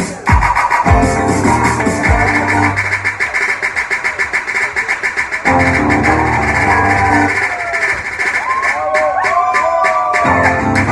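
Live guitar and drum kit playing an instrumental passage of a pop ballad medley, with a steady, fast cymbal beat. The playing grows fuller about halfway through, and bending notes come in near the end.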